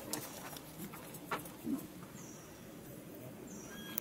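Quiet outdoor background with a few sharp clicks in the first half and two short, high, falling chirps in the second half.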